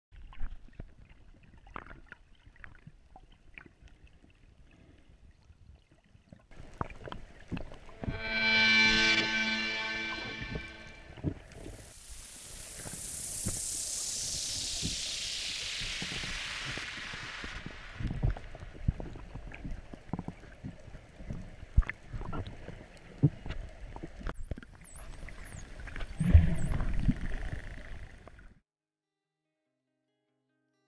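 Underwater sound with scattered crackling clicks throughout, overlaid with music-like tones: a held chord about eight seconds in, then a long falling whoosh. Near the end come a few high, arching whistles, and the sound cuts off suddenly shortly before the end.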